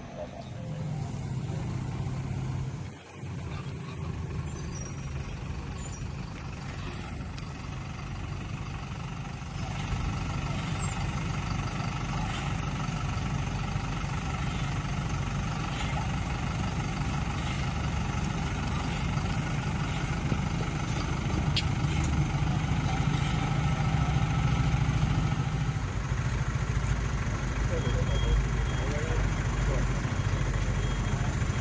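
Road-rail vehicle's diesel engine running steadily at low revs as the truck is manoeuvred to line up on the light rail track. It gets louder about nine seconds in and stays there.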